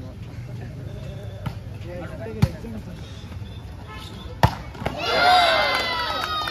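A volleyball struck hard twice, about two seconds apart, with a lighter hit before them. Near the end a crowd breaks into loud cheering and shouting.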